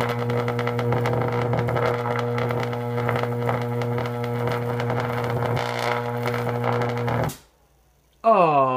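High-voltage arc from a microwave oven transformer burning between a metal rod and a copper wire: a loud, steady mains-frequency buzz with crackling over it. It cuts off suddenly about seven seconds in as the switch trips.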